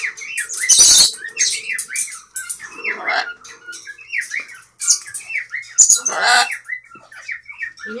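Loud, harsh parrot squawks, once about a second in and again around six seconds, over a steady run of quick repeated bird chirps.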